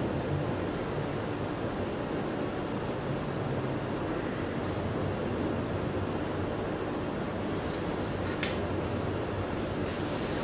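Steady low rumbling background noise with a faint, thin high whine running through it, and a single sharp click about eight and a half seconds in.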